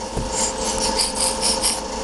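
Quick scratchy swishes, several a second, of a baby's hands and knees crawling over carpet, with a steady faint hum underneath.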